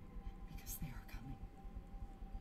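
Soft whispered speech from the show's dialogue, faint over a low steady hum.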